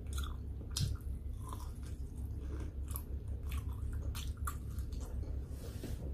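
A person chewing a mouthful of food, with wet mouth clicks and smacks at irregular intervals over a steady low hum.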